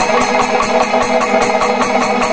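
A Panchavadyam temple orchestra plays loud, continuous music. Timila and maddalam drums are struck fast and densely, ilathalam cymbals clash in an even rhythm, and steady held tones run underneath.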